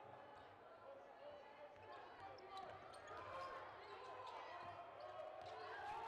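Basketball being dribbled on a hardwood court, faint, over a low murmur of voices in the arena.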